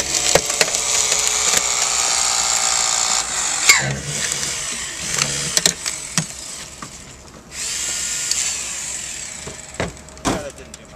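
Hydraulic rescue tool working on a car's door frame and pillar: its motor runs with a steady high whine for about three seconds, then a few sharp cracks of metal giving way, then the motor runs again near the end.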